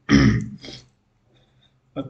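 A man clears his throat in two quick bursts near the start, the first louder than the second.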